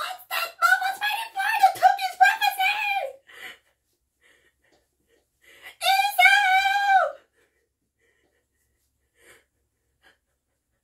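A high-pitched voice shouting in drawn-out cries: one run of about three seconds, then quiet, then a second cry of about a second and a half near the middle.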